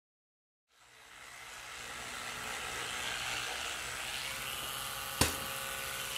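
A steady hiss that fades in about a second in and then holds, with one sharp click about five seconds in.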